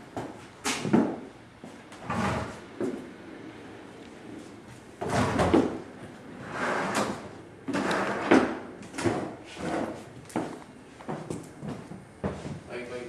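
Wooden drawers and cupboard doors being pulled open and pushed shut: a string of scrapes and knocks, about a dozen in all, some longer and louder around the middle.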